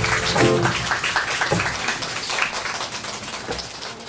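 The final chord of acoustic guitars and upright bass dies away, followed by scattered clapping that fades out.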